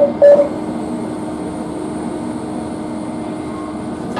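Interior running noise of a Renfe series 450 double-deck electric commuter train, a steady hum over a rumble. The last two of a run of short, evenly spaced electronic beeps of one pitch from the train's onboard system sound at the start and stop about half a second in.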